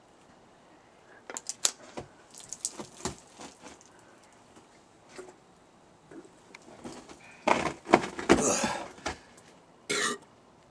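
Drink can being handled and drunk from, with a few sharp clicks and small knocks, then a loud, rough, breathy stretch about seven and a half seconds in that lasts a second and a half.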